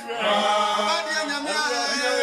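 A small mixed group of men and women singing a worship song together in harmony, with a brief dip in sound right at the start.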